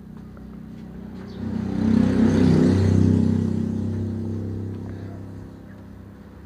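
A motor vehicle passing by: its engine grows louder over about a second and a half, peaks, then fades away over the next few seconds.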